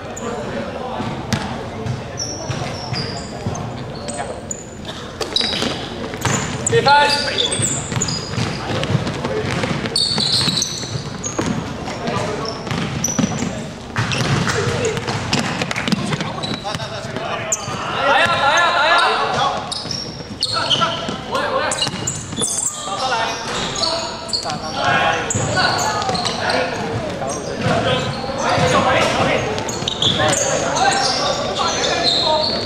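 A basketball bouncing on a hardwood gym floor as players dribble, with short high sneaker squeaks among the thuds, echoing in a large indoor hall.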